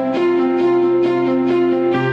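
Instrumental background music: held chords over a steady low note, with new notes coming in every half second or so.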